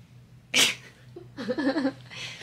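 A short, sharp breathy burst about half a second in, then a person laughing briefly near the end.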